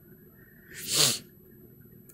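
One short, breathy burst of air from a person about a second in, swelling and fading within about half a second, like a sharp exhale or sneeze.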